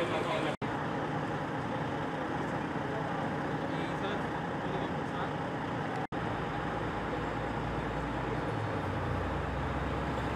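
Idling vehicle engines, a steady low rumble that deepens in the last few seconds, with indistinct voices. The sound drops out for an instant twice, about half a second in and about six seconds in.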